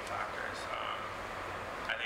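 A man speaking haltingly, with drawn-out, creaky voiced sounds between words, over a steady low room hum.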